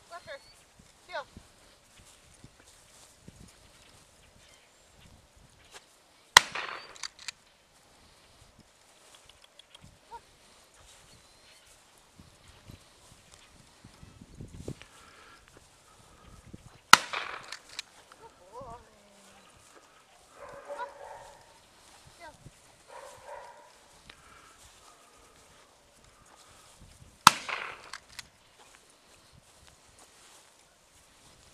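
Three single gunshots about ten seconds apart, each a sharp crack with a short echoing tail, with faint footsteps in dry grass between them.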